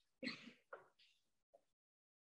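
A man softly clears his throat once, a short throaty rasp about a quarter second in.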